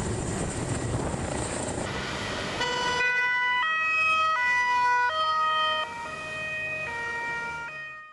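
Two-tone police siren switching between a high and a low note about every 0.7 seconds, coming in about three seconds in over a noisy street background and fading out at the end.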